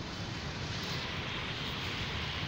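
Steady background noise: a low rumble with a hiss over it, with no distinct events.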